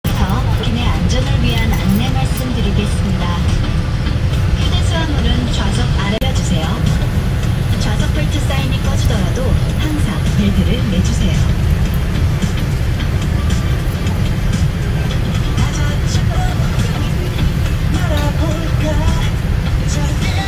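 Steady low rumble of an airliner cabin, from the engines and air system, with the in-flight safety video's song and spoken safety instructions playing faintly over it.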